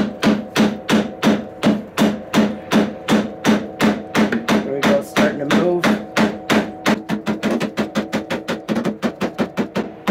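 Rubber mallet striking a steel tack puller hooked into a worn snowmobile slider (hyfax), driving it rearward off the suspension rail. The strikes come steadily, about three a second, then quicken to four or five a second in the last few seconds, with a ringing tone under them.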